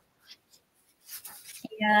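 Sheets of printed rice paper rustling and sliding against each other as they are leafed through by hand, starting about halfway through after a near-silent first second.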